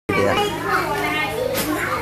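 A crowd of young schoolchildren chattering and calling out at once, many voices overlapping.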